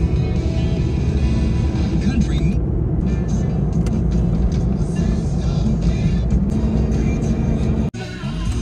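Road and engine noise inside a hatchback's cabin while driving at highway speed: a steady low rumble that cuts off suddenly near the end.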